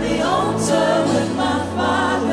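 Choir singing a slow gospel worship song over steady, sustained instrumental chords.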